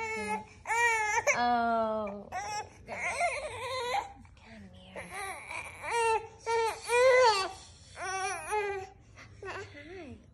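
A five-month-old baby fussing and crying in several short high-pitched bursts that bend and slide in pitch, the longest starting about a second in.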